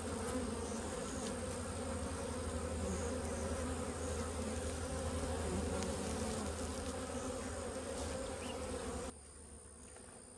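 Honey bees buzzing close by in a steady, dense hum. It cuts off suddenly about nine seconds in.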